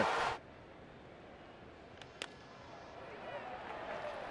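Loud ballpark crowd and broadcast sound cuts off abruptly just after the start, leaving faint stadium crowd murmur. A single sharp crack comes a little over two seconds in, and the murmur swells slightly near the end.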